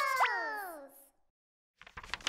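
The tail of a cartoon logo jingle: a cluster of pitched tones slides downward and fades out within about a second, with two quick upward whoops near the start. A short silence follows, then a new sound starts just before the end.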